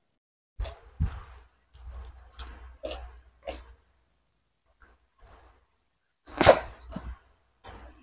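Close-miked eating sounds: chewing and mouth noises in short irregular bursts, then a quiet gap of a couple of seconds, then a louder burst of mouth noise about six and a half seconds in. She is eating chicken curry and rice by hand, with a raw bird's eye chili.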